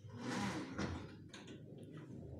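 A brief scraping rub against plywood lasting about a second, followed by a couple of faint knocks.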